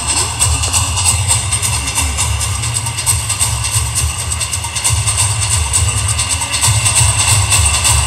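Music with a steady beat played over a football stadium crowd during the players' walk-out, with wind rumbling on the microphone.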